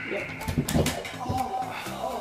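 A doorway pull-up bar gives way and a man drops to the floor with it, a thud and a cry heard over background music.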